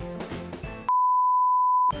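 Background music, then about a second in a loud, steady single-pitch bleep near 1 kHz lasting about a second, with all other sound cut out beneath it: an edited-in censor bleep.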